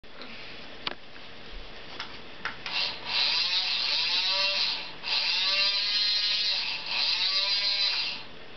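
A few faint ticks, then mechanical whirring in three long bursts with brief pauses between them, its pitch sweeping up and down.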